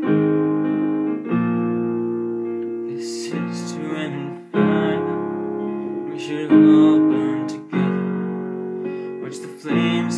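Ashton digital piano playing an instrumental passage of slow sustained chords. A new chord is struck every second or two, and each rings on and fades before the next.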